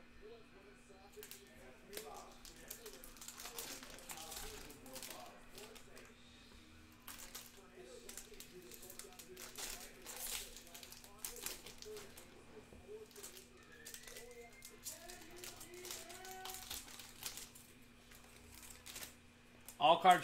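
Foil trading-card pack wrappers crinkling and tearing as packs are opened by hand, in short scattered crackles, over a faint steady low hum.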